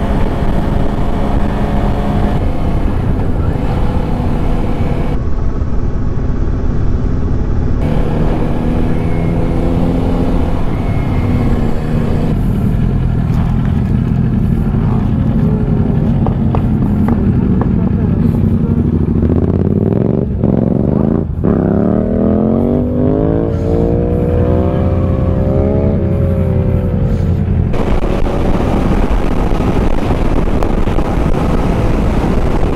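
Kawasaki Z400 parallel-twin motorcycle engine running on the move, with wind rushing over the microphone, in several stretches joined by abrupt cuts. In the second half the engine revs up steadily as the bike accelerates, then holds its pitch.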